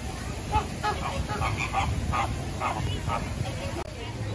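A flock of flamingos calling: a flurry of about ten short, goose-like honks in quick succession.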